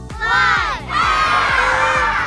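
A child's voice calls out the last number of a countdown. About a second in, a group of children cheers and shouts together. Music with a steady beat plays underneath.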